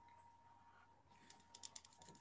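Faint rapid clicking of computer keyboard keys starting about a second in, over a faint steady high hum; otherwise near silence.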